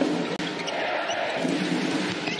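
Indoor handball arena crowd noise: a dense roar of spectators with sustained group chanting, and a handball bouncing on the court floor.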